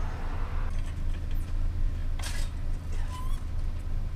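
Steady low vehicle rumble, with a short rattle of a metal shopping cart about two seconds in as a man climbs into it.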